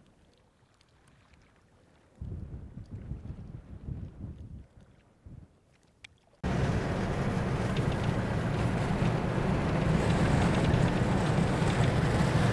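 Wind buffeting the microphone in low gusts, then from about six seconds in the steady drone of a Toyota LandCruiser 79 Series 4WD driving over sand, a low engine hum with tyre and road noise that grows slightly louder.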